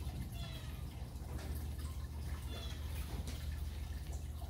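Steady low background hum with a faint even hiss; no clear handling sounds stand out.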